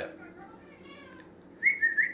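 A short, high whistling tone near the end, dipping slightly in pitch, after a quiet pause.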